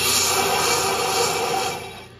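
Benchtop brake lathe's carbide cutting tip scraping across a spinning cast-iron brake rotor, cutting away a rust ring at the rotor's inner edge: a loud steady hiss that drops away suddenly near the end as the cut stops.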